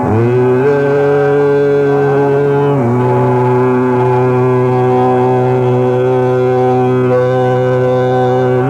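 Hindustani classical vocal music in Raag Megh: a male voice holds long notes, sliding up into one at the start and stepping down to a lower sustained note about three seconds in.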